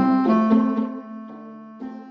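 Background music: a few struck keyboard notes ringing and dying away, softer in the second half.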